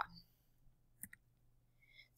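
Near silence with one faint double click about a second in. It is a computer mouse button pressed and released to advance a presentation slide.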